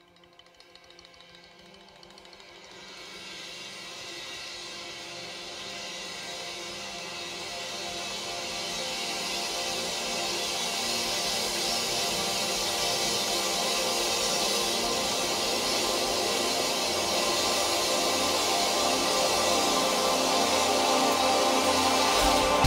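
Sustained electronic keyboard chord fading in from near silence and swelling steadily louder, with a brightening hiss building on top: the slow build-up at the start of a live progressive rock piece, just before the drums come in.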